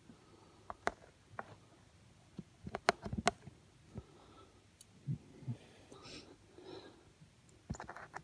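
A mostly quiet room with scattered sharp clicks and taps, a quick cluster of them about three seconds in, and faint low murmuring between about five and seven seconds.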